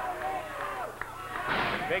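Voices from the arena crowd and commentary, then near the end a short, louder burst of noise as a wrestler is body-slammed onto the ring canvas.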